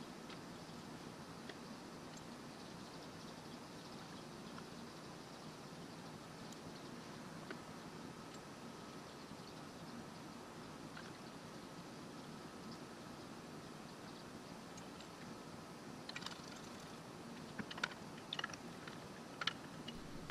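Faint steady hiss as rotor bolts are threaded by hand into a wheel hub, with a few light clicks in the last few seconds.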